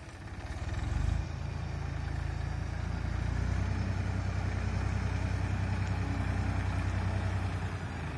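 Tractor diesel engine running. It grows louder about a second in and then holds a steady low drone.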